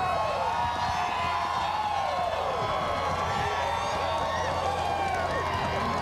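Crowd cheering and shouting in celebration, many voices rising and falling over one another.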